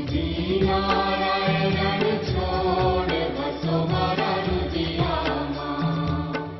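Hindu devotional aarti music: voices singing a chanted mantra over instruments with a steady beat.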